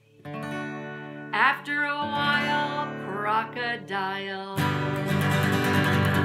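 A woman singing with an acoustic guitar: a chord rings while she sings a few short, rising phrases, then about four and a half seconds in she breaks into quick, louder strumming.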